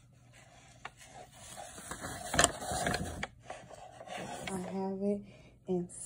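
A butcher-paper-wrapped mug rubbing and scraping as it is pushed into a mug press's heating element, with one sharp knock about two and a half seconds in.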